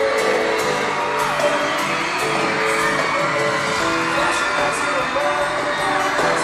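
Live pop music played loud through an arena sound system, with singing and an audience whooping and screaming over it.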